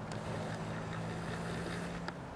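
A steady low mechanical hum, like a distant engine, over a faint even background hiss.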